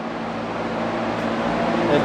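Heater blower blasting warm air down a stairway: a steady rush of air with a low hum, slowly growing louder.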